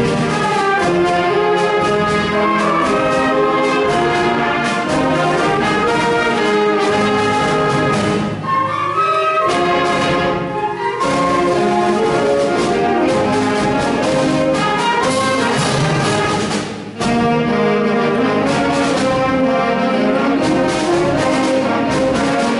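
High school symphonic band playing a march, brass to the fore over woodwinds and percussion. The music briefly thins out twice near the middle, and a short break just before three-quarters through is followed by the full band coming back in.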